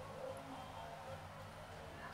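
Faint background room tone with a low steady hum, and no distinct sound events.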